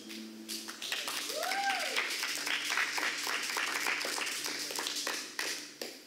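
Congregation applauding. The clapping starts about a second in and dies away near the end, over a steady low hum.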